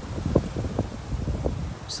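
Wind buffeting the phone's microphone, a low uneven rumble with a few faint knocks.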